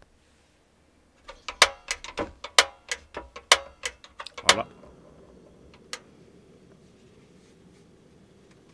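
A quick, irregular run of sharp clicks and knocks for about three seconds, then a steady low rush as the gas burner under the cast-iron skillet catches and keeps burning.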